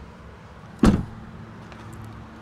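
Rear liftgate of a 2016 Honda Pilot SUV shut, one loud thud as it latches a little under a second in.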